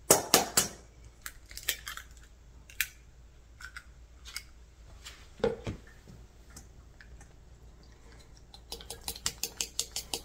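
An egg knocked and cracked on the rim of a stainless steel mixing bowl, a cluster of sharp knocks at the start, then scattered taps of a fork against the bowl. Near the end a fork beats the egg into the flour, clicking against the metal bowl about five times a second.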